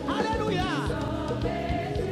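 A woman singing a Haitian Creole gospel worship song with musical accompaniment; her voice makes a quick falling run just under a second in.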